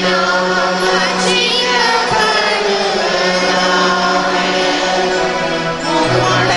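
A choir of girls singing a hymn in Tamil, the voices gliding together through the melody over a steady held low note.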